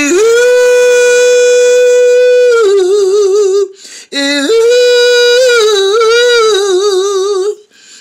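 A woman singing without words in two long phrases. Each phrase swoops up to a high held note, then wavers in wide vibrato, with a short breath between them about four seconds in.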